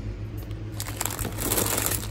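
Crinkly plastic snack bags rustling as they are picked up and handled, the crackling getting denser and louder in the second second.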